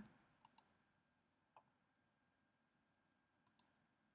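Near silence with a few faint, short clicks of a computer mouse.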